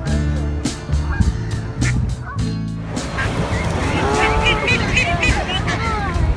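Strummed guitar background music with a steady beat, then, from about halfway, Canada geese honking close by with people talking.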